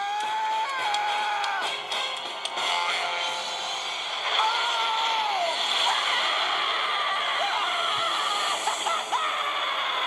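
A cartoon character's long, drawn-out screams, each held for a second or more and sliding in pitch at the ends, over dramatic background music.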